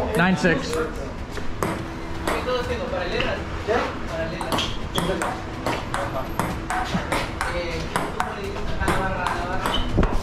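Table tennis rally: a ping pong ball clicking off the paddles and the table again and again, with people's voices in the background.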